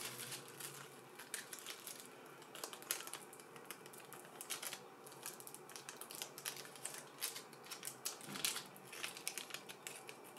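Plastic and silver anti-static packaging bags rustling and crinkling in the hands as a small circuit board is unwrapped, in faint scattered crackles that come in a few busier bursts.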